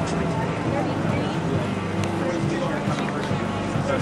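Music with sustained low notes, mixed with indistinct voices and outdoor background noise.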